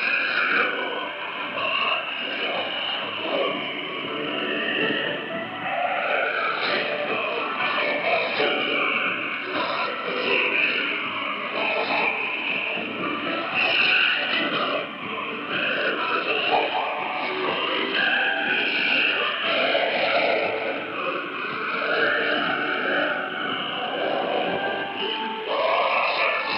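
Music from the Voice of Korea shortwave broadcast, heard through the radio receiver with a narrow, band-limited sound, a faint steady whistle and the noise of the shortwave signal.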